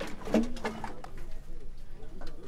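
A bird cooing once, briefly, in the manner of a dove, over low background noise with a few faint clicks.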